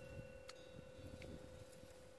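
Near silence: faint background hiss with a thin steady hum and one faint click about half a second in.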